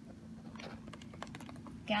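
A few faint, light clicks and taps of plastic grocery packaging being handled, over a low steady hum.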